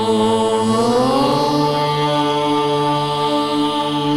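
A voice chanting a drawn-out Vedic mantra over a steady drone. The pitch slides upward about a second in, then is held in long sustained notes.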